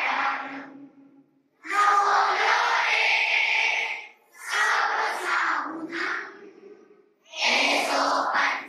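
Several voices chanting a prayer together in unison through microphones, in held, sing-song phrases of two to three seconds with short breaths between them.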